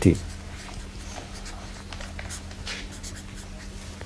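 Faint scratching of a hand writing out an equation in a few short strokes, over a low steady electrical hum.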